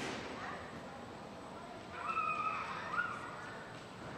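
A child's high-pitched voice calling out for about a second, a little after the midpoint, over a low murmur of background noise.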